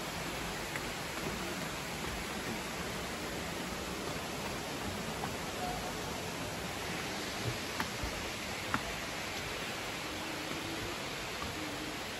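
Steady rush of flowing water, with a few light footsteps knocking on wooden stairs around the middle.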